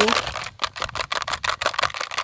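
A rapid, even run of rattling clicks, about eight a second, after a short hiss at the start.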